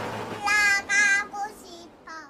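A young child's high voice singing three short held notes about half a second in, then a lower, fainter note near the end.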